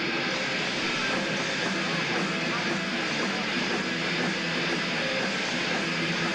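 Thrash metal band playing live: a dense, steady wall of distorted electric guitars and drums, heard through a saturated audience recording.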